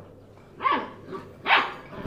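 Puppy barking in play: two short, high yaps about a second apart.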